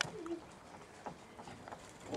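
Golden retriever puppies scuffling, with one short, low call about a quarter second in.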